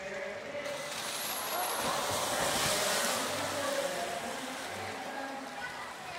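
Orcas splashing heavily at the surface next to the pool edge: a broad rush of churning water that swells to its loudest about two and a half seconds in, then eases off as the water settles.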